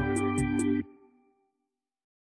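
Instrumental music with a steady beat that stops abruptly a little under a second in. Its last notes die away, then silence.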